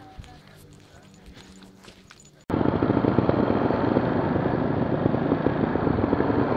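Quiet outdoor background, then about two and a half seconds in a sudden cut to loud, rough engine noise of trial motorcycles riding off-road, heard from a camera on the rider.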